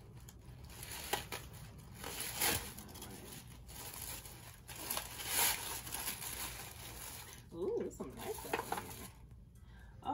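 Cellophane gift-basket wrap crinkling and tearing as it is pulled open by hand, in uneven crackles with the loudest bursts about two and a half and five and a half seconds in.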